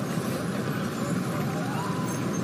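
Steady city street ambience: an even, low rumble of distant traffic.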